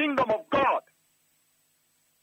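A person speaking for under a second, then a pause of near silence.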